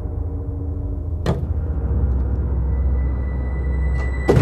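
A low, steady, eerie drone from a horror-style background score, with one sharp whoosh about a second in.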